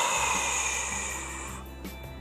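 A woman's long exhale through the mouth, close to a clip-on microphone, fading away after about a second and a half, over soft background music.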